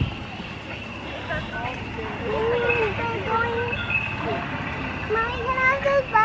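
Indistinct high-pitched voice talking over steady outdoor background noise.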